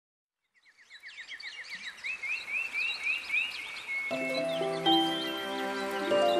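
Birds chirping: a fast run of short falling chirps, then slower rising chirps about two or three a second with higher calls over them. About four seconds in, the soft instrumental music of a lullaby begins with long held notes.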